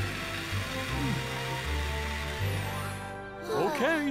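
Cartoon fire-hose spray hissing steadily as it puts out a fire, fading out after about three seconds, over background music with a bass line.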